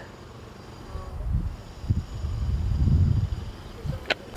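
Low, uneven rumbling of wind buffeting the camera's microphone outdoors. It swells about a second in, is loudest near three seconds and dies away just before the end.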